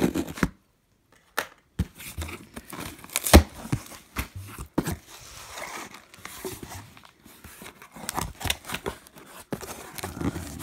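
Cardboard box being torn open along its string-reinforced paper sealing tape and its flaps pulled back: a run of tearing and crinkling with sharp snaps, the loudest about three and a half seconds in.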